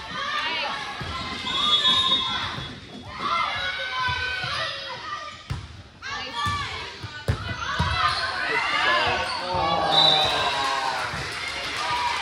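Indoor volleyball rally: the ball struck with a few sharp thuds, amid players' calls and spectators' voices echoing around a large gym.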